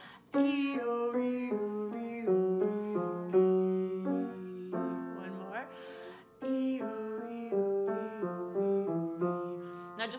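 A woman singing an 'ee-oh, ee-oh' vocal warm-up low in her chest voice, to an upright piano playing the stepping note pattern. It comes in two phrases, with a short break for a breath about six seconds in.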